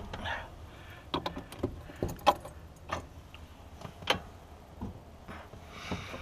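Scattered metallic clicks and clinks of hardware being handled inside a Bobcat 443 skid-steer loader's cab as the operator settles in, the sharpest about two seconds in.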